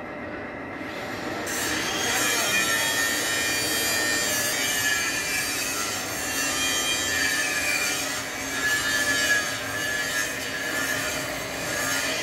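Three-roll plate bending machine rolling a 10 mm steel plate into a cylinder: a steady grinding rub of steel plate against the steel rollers with a high metallic squeal, starting about a second and a half in.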